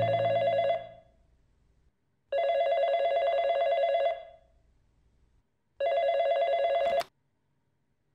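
A Uniden desk telephone rings with an electronic trilling tone, in bursts of about two seconds with gaps between. The third ring is cut short just before the end as the handset is picked up.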